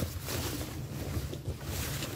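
Heavy jackets rustling and rubbing as hands dig through a heap of clothing in a bin, with fabric brushing close against the microphone.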